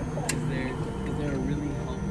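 Voices over a steady city-street traffic rumble, with one sharp knock a little way in.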